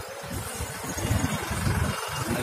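Vehicle engine and road noise while riding along a city street, with low rumbling that rises and falls unevenly.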